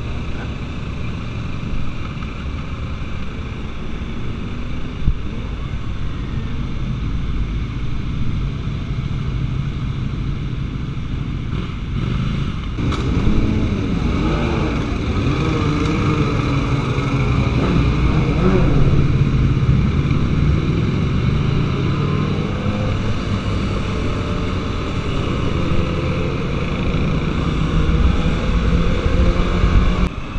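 Motorcycles riding in a group, heard from a microphone on one of the bikes: steady wind and engine noise. From a little under halfway through, engine pitch rises and falls as the bikes close up, and it is loudest about two-thirds of the way in.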